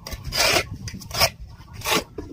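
Metal shovel blade scraping across a concrete floor while scooping grey sand, three rasping strokes, the first the longest.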